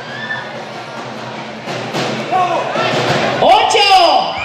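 Audience in a large hall, a low murmur at first, rising from about two seconds in into many overlapping shouting and cheering voices that grow louder toward the end.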